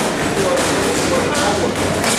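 Boxing gloves striking focus mitts: a few sharp smacks about half a second apart, under voices talking.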